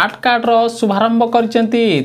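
Only speech: a news reader talking without pause.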